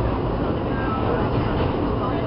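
Steady rumble and rattle of a New York City subway car running on the tracks, heard from inside the car.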